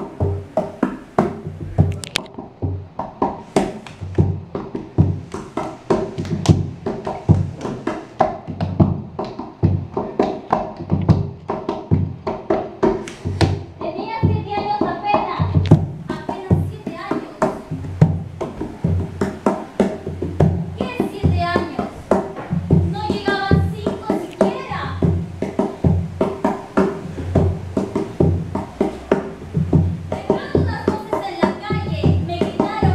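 Live music with a steady, quick percussive beat. From about halfway through, a voice sings several phrases with a fast wavering tremolo.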